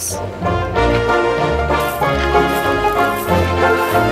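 Background music: a melody of held notes over a pulsing bass line.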